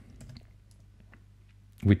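A few faint, scattered clicks from a computer mouse and keyboard being worked, with a man's voice starting again near the end.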